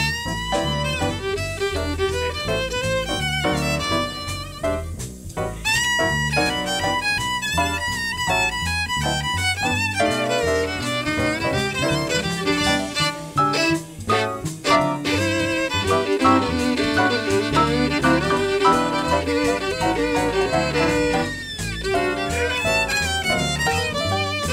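Live swing jazz combo playing an instrumental passage: a violin carries the melody over piano, plucked upright bass and drums.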